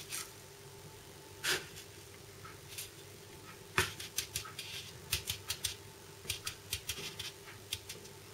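Spoon tipping and spreading a salt curing mix over salmon in a plastic container: a few scattered scrapes, a sharp click about four seconds in, then a quick run of short scraping strokes as the salt is smoothed flat to cover the fish completely.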